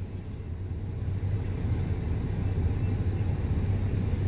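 Car engine idling, a steady low rumble heard from inside the cabin.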